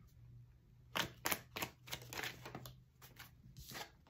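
Tarot cards being handled: a string of soft clicks and snaps as a card is drawn and flipped from the deck, starting about a second in, over a faint low hum.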